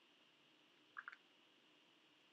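Near silence: room tone, with one brief faint double tick about a second in.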